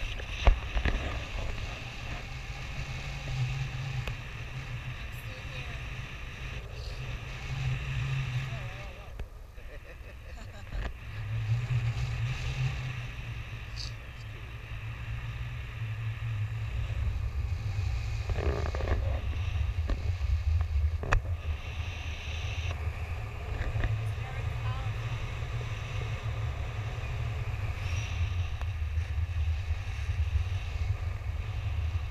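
Wind buffeting an action camera's microphone in paraglider flight: a steady low rumble that swells and eases, growing louder in the second half.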